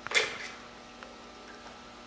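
A short sharp click from the Beretta 391 shotgun being handled at its trigger group during disassembly, followed by a much fainter tick about a second in.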